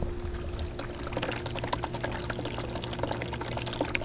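Recirculating nutrient solution falling from a PVC return pipe into a plastic tote reservoir: a steady trickling splash full of small bubbling pops over a faint steady hum. This is the system's normal return flow, and the splash helps aerate the water.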